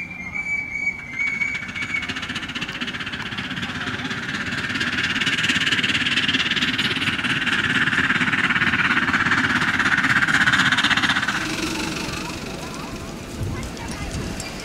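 Miniature live-steam locomotive: one steady whistle blast of about two seconds at the start, then fast chuffing and steam hiss that grows louder as it works nearer and drops away sharply about three-quarters of the way through.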